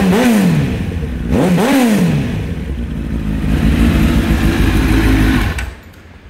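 Honda CBR1000RR (SC57) fuel-injected four-cylinder engine through a center-up racing muffler, revved in two quick throttle blips that rise and fall in pitch, then idling. The sound is crisp and cuts off suddenly shortly before the end.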